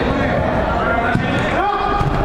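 Players' voices calling and shouting on a five-a-side football pitch, with a single sharp thud a little over a second in.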